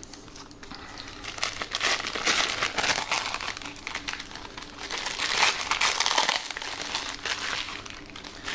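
Thin plastic bags crinkling irregularly as hands open and unwrap the two sticks of a two-part epoxy putty. The crinkling is quieter at first and grows louder after about two seconds.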